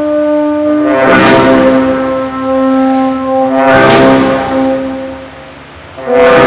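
Brass band playing a slow sacred march in long held chords, with two crashes, about a second in and just before four seconds. The chord dies away near the end.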